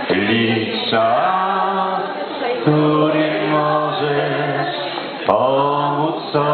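Slow Christmas carol singing in long held notes, one phrase after another, with a short break and a click about five seconds in before the next phrase.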